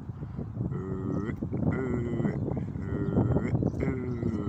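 A drawn-out, mid-pitched call repeated four times, about a second apart, each held for about half a second at a steady pitch, over a low outdoor rumble.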